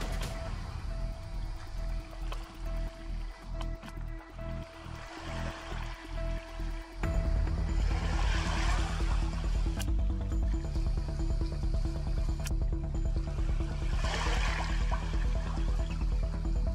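Background music: held steady notes over a pulsing low beat that comes in fuller and louder about seven seconds in, with two swells of rushing noise later on.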